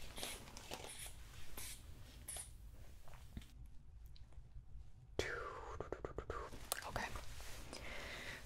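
Manual blood pressure cuff being taken: soft puffs of air about once every 0.7 seconds as the rubber hand bulb is squeezed, then a short quiet gap and a run of light clicks with a brief falling squeak as the cuff is handled and released.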